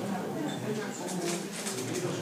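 Speech: a man talking, lecture-style, with no other distinct sound.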